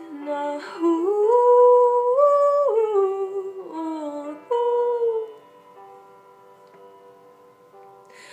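A woman humming a wordless melody over a backing instrumental, the tune climbing and then falling back. About five seconds in the voice stops, leaving the quieter instrumental.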